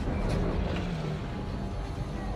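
Film sound effects of a giant alien flying creature, a Chitauri Leviathan, surging out of a portal: a dense low rumble that swells at the start, with orchestral score underneath.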